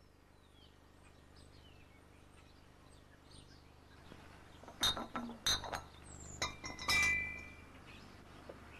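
Glass pint milk bottles clinking as they are set down on a hard step: four or five sharp clinks in the second half, the last ringing on briefly. Faint bird chirps come before them.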